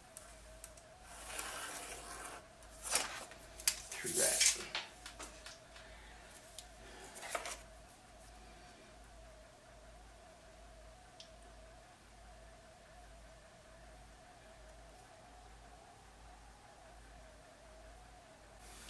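A pencil scratching along a steel ruler on sketch paper, followed by a few sharp metal clicks and knocks as the ruler and a pair of steel dividers are handled. A faint steady hum lies under it all.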